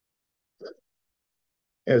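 Dead silence broken once, under a second in, by a single short throat or mouth sound from the man, a fraction of a second long. A man's voice starts speaking just before the end.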